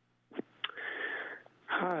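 A public-comment caller's telephone line opening: two clicks, then about a second of breathy noise into the handset, before a man says "Hi" near the end. The sound is narrow and thin, cut off like a phone line.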